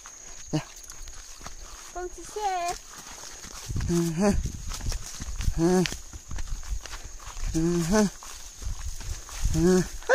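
Short pitched vocal calls, each bending up and down in pitch, repeating about every two seconds, over a steady high-pitched whine.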